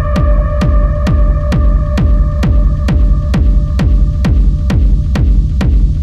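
Techno from a DJ set: a steady four-on-the-floor kick drum at about two beats a second, each kick dropping in pitch, with crisp percussion on the beat. A held synth chord fades out about halfway through, leaving the kick and percussion.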